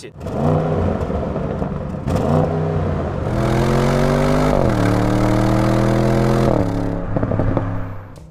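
Audi RS6 Avant Performance's 4.0-litre twin-turbo V8 heard at the exhaust, accelerating: a couple of short rises in pitch, then a long pull that drops once at a quick upshift and climbs again before letting off near the end. The exhaust note is fairly subdued, which the host blames on the gasoline particulate filter (GPF).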